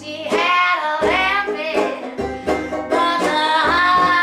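Live acoustic string band playing blues: a strummed banjo over upright bass and acoustic guitar, with a woman singing.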